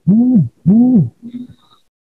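A man's voice making two short, drawn-out vocal sounds, each rising then falling in pitch over about half a second, followed by a fainter, shorter one.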